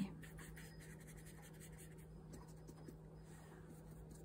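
Faint, soft scratching of an ink blending brush being worked over paper cut-outs and dabbed on an ink pad, with a few light ticks.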